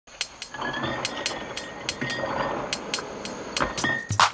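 Soundtrack music: sharp, irregularly spaced clicking hits over a dense noisy wash, with a faint high steady tone.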